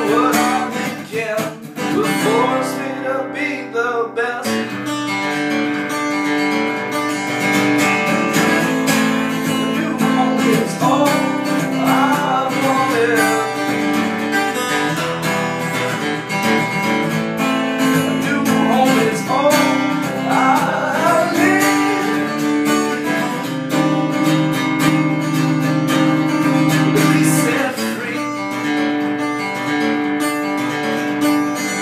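Acoustic-electric guitar played solo, strummed in a steady rhythm with sharp attacks on each stroke.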